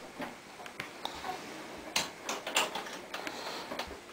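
A door being shut and its lock hardware worked: a series of sharp clicks and knocks, the loudest about halfway through.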